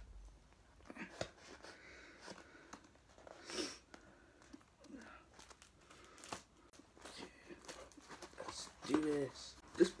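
Packing tape on a small cardboard box being cut and torn open by hand, a run of short scratches, rips and crinkles with one louder rip about a third of the way in.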